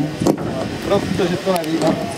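A man speaking, over steady background noise.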